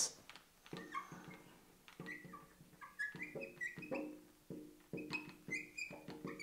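Marker pen squeaking on a glass lightboard as words are written: a faint string of short squeaks, one per stroke, some rising briefly in pitch.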